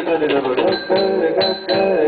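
Live Indian fusion band playing: a lead melody of plucked notes that slide and bend in pitch, in the style of a Hindustani slide guitar, over keyboard and percussion.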